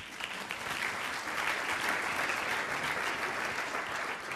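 Audience applauding, building over the first second and then holding steady.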